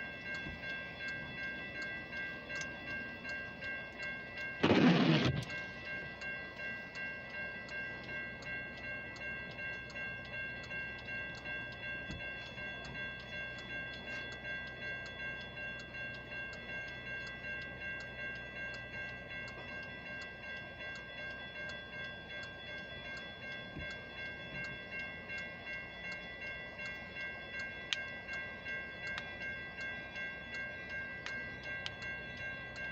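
Railroad crossing warning bell ringing steadily, about two strokes a second, while the gates are down and the lights flash for an approaching train. About five seconds in, a sudden loud noise lasts about a second.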